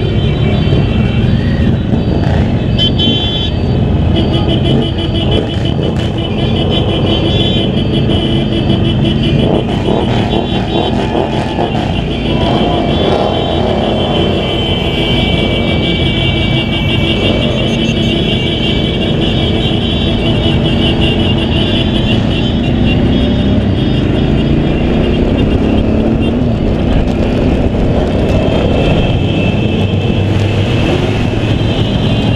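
Suzuki V-Strom DL650 motorcycle V-twin engine running in slow convoy traffic, its pitch rising and falling as it speeds up and slows. Heavy wind rush and other motorcycle and car engines are mixed in.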